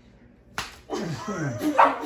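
A single sharp smack of a soft flour tortilla slapped across a person's face about half a second in, followed by loud laughter.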